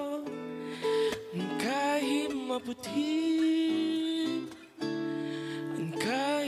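A man singing a song into a microphone over instrumental accompaniment, holding long notes.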